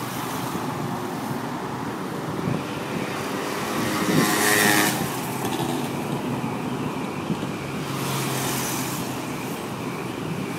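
Steady outdoor traffic noise, with a vehicle passing loudest about four to five seconds in and a fainter one around eight seconds in.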